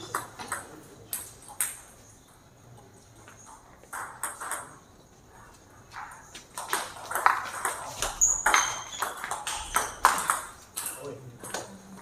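Table tennis ball clicking off paddles and the table: a few scattered hits and bounces early on, then a quick back-and-forth rally from about six and a half seconds in to about eleven seconds.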